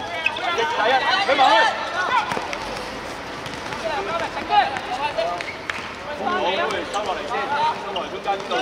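Men's voices shouting and calling out across the court during play, with a few sharp knocks of a football being kicked on the hard surface.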